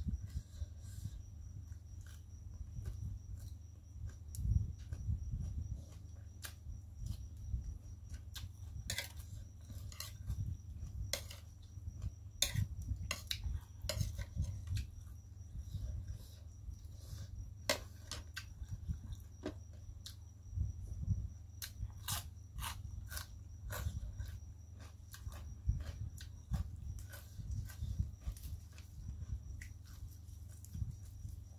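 Close-miked eating sounds: chewing of papaya salad and fresh leaves, with scattered sharp clicks of a fork against the plate, over a steady low hum and a continuous high-pitched trill.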